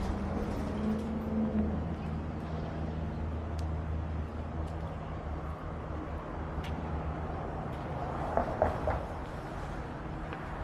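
A shuttle bus engine idling with a steady low hum, its pitch rising slightly for a moment about a second in. A few short louder sounds break in near the end.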